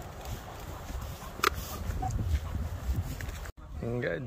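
Walking along a gravel path outdoors with dogs: a low rumble of wind on the phone microphone, with a few light footstep crunches and clicks.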